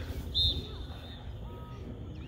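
Open-air field ambience: wind rumbling on the microphone under faint, distant voices of players and spectators. A brief high-pitched tone sounds about half a second in and fades within a second.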